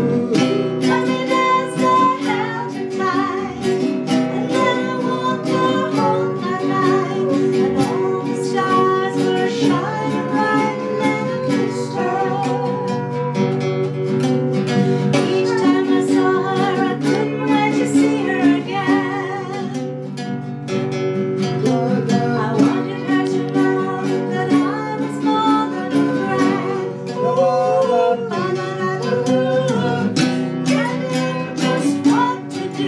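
Acoustic guitars strummed as accompaniment, with a woman singing along.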